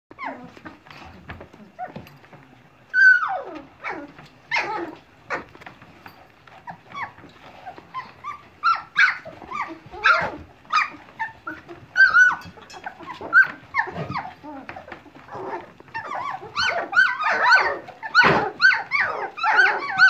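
A litter of two-and-a-half-week-old standard poodle puppies whining and yelping, many short high calls overlapping, busier and louder in the last few seconds.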